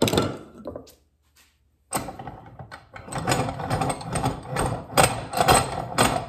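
Workshop handling noise: a single knock, a short pause, then a run of clacks and scraping as a piece of PVC pipe is set in a cast bench vise and the vise handle is worked to clamp it.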